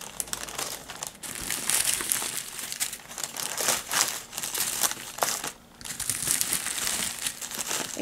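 Small plastic zip-top bags of diamond painting drills being handled and shuffled, crinkling continuously with a brief pause about five and a half seconds in.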